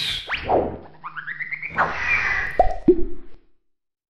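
Cartoon-style transition sound effects for an animated title card. There is a swish at the start and a quickly rising run of chirpy blips. A longer swish follows, then two short plops falling in pitch about three seconds in.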